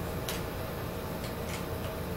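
Light clicks and taps of small puzzle pieces being picked up and set down on a wooden table, about four in two seconds, over a steady background hum.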